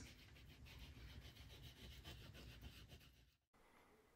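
Very faint rubbing of a fingertip working antique wax into the napkin-textured surface of a plastic ornament. It stops suddenly about three and a half seconds in.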